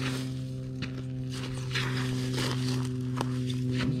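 Footsteps crunching and scuffing in dry pine straw, with a few short rustling crunches. A steady low hum runs underneath.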